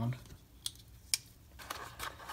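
Two sharp clicks about half a second apart from a Steel Will Piercer liner-lock folding knife being flicked and worked in the hand, followed by faint handling rustle near the end.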